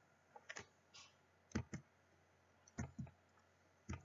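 Faint computer mouse button clicks, mostly in close pairs roughly once a second, as an option is picked from a drop-down list and the list is opened again.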